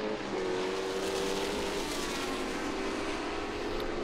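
Formula 5000 racing cars' V8 engines running at high revs out on the circuit, a steady, slightly wavering engine note.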